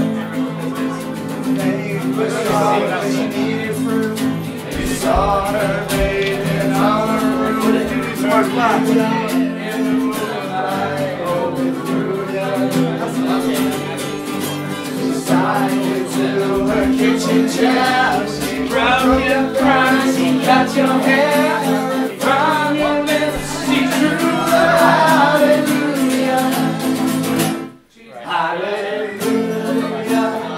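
Two acoustic guitars strummed together while young men sing along, with a short break in the music near the end.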